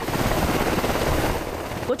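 UH-60 Black Hawk helicopter hovering low overhead: a steady, rapid beat of its rotor blades over engine and rotor noise.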